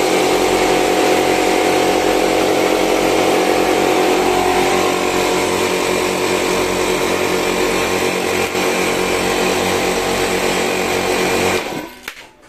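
Three small 2 HP portable piston air compressors running together, their motors and pumps going steadily with a fast low pulsing from the piston strokes. The sound cuts off suddenly near the end.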